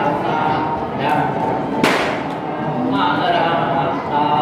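Several voices chanting in long held tones, with a sharp knock about two seconds in.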